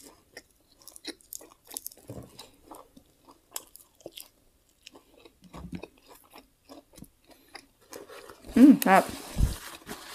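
Close-miked eating: a mouthful of fresh salad greens and grilled pork crunched and chewed, with small wet crackles and clicks, followed by a short voiced sound near the end.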